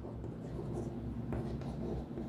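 Chalk writing on a chalkboard: faint short scratching strokes as a word is written out by hand.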